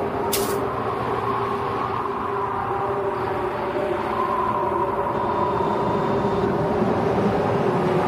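A steady rumbling drone with a few held tones in it, a sound-effect or ambient music bed, with a short high swish about half a second in.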